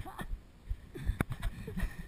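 A man's voice trailing off with a chuckle, then short soft voice sounds and a single sharp click a little past a second in.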